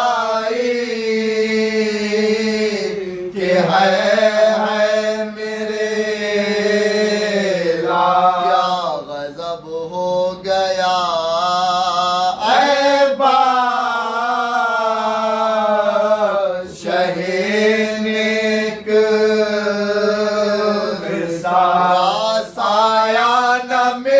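Men chanting a soz, a Shia mourning elegy, without instruments: a lead reciter with supporting voices. They sing long, held, wavering phrases broken by short pauses every few seconds.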